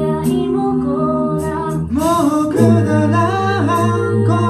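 An a cappella group of six voices, amplified through handheld microphones, singing a wordless passage of sustained layered chords with moving upper lines. A little past halfway the chord changes and a deeper bass note comes in, stronger than before.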